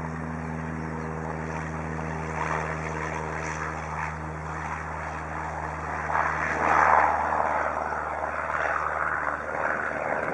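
A single-engine Cessna's piston engine and propeller at takeoff power during the takeoff roll: a steady drone, with a broad rush that swells to its loudest about seven seconds in.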